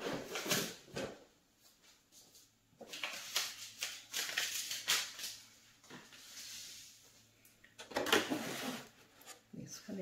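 Intermittent rustling and light clicks and knocks of hands handling plastic milk-jug planters.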